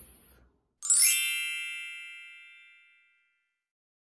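A single bright chime, like a bell, rings about a second in and fades away over about two seconds: an edited-in transition sound effect.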